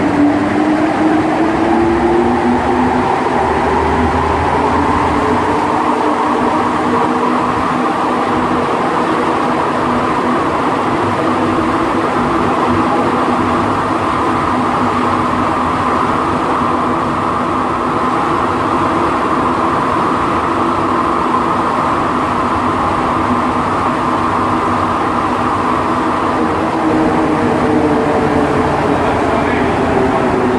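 Montreal Metro Azur (MPM-10) rubber-tyred train heard from inside the car. The traction motor whine rises in pitch as it accelerates away from a station and settles into a steady running rumble. Near the end the whine falls in pitch as the train brakes for the next station.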